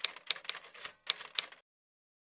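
Typewriter sound effect: a quick run of key clicks, about four a second, keeping time with on-screen text being typed out. It stops about a second and a half in.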